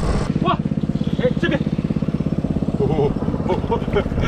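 Engine-driven water pump running steadily with a fast, even chugging beat, pumping seawater out of a tide pit through its suction hose.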